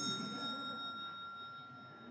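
A small hand bell, the chair's miniature Liberty Bell, struck once right at the start and left to ring out, its clear ringing tones fading away. It is the last-call signal that the speaker's time is up.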